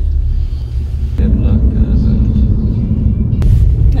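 Car engine and tyre rumble heard from inside the cabin while driving, getting louder about a second in as the car gathers speed.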